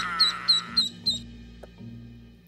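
Ducklings peeping: a quick run of about five short, high calls in the first second or so, over background music.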